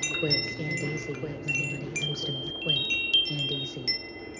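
Wind chimes ringing: many short, high metallic tones struck at irregular moments and overlapping as they ring on, over a lower wavering pitched tone.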